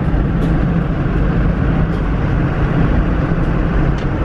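Steady engine and road noise heard from inside a moving vehicle, a loud, even low rumble.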